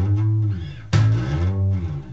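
Electric bass slapped with the thumb on the E string at the 5th fret, each note slid up the neck and back down. The second slapped slide comes about a second in.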